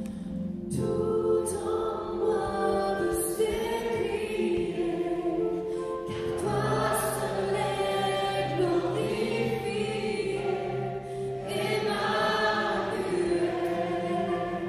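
Worship band performing a song: several voices, men and women, singing together over electric piano accompaniment with long held low notes.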